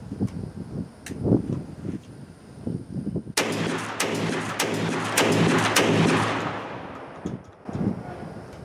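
Browning Auto 5 12-gauge long-recoil semi-automatic shotgun firing heavy birdshot, several shots in quick succession starting about three and a half seconds in, each about half a second apart and ringing out for a few seconds after the last. The action cycles properly on each shot with the 3D-printed forend.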